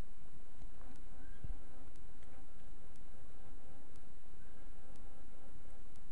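A flying insect's wavering whine buzzing near the microphone, over a steady low wind rumble.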